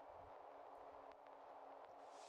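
Near silence: a faint steady hiss that starts abruptly, over a low hum, with a few faint clicks.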